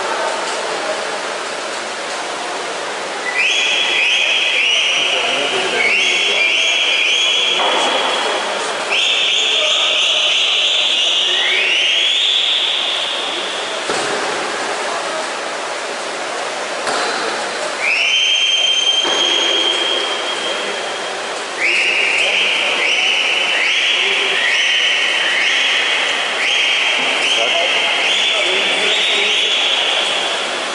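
Repeated shrill whistles, several overlapping, each rising quickly into a held note, in bursts over a steady crowd din in an indoor pool hall. They come from about three seconds in to thirteen seconds, again near eighteen seconds, and almost without a break through the last third.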